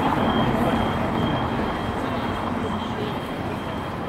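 Outdoor city ambience: a steady low rumble with faint background voices, and a thin high whine that comes and goes.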